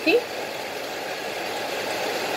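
A steady, even rushing noise with no rhythm or strokes in it.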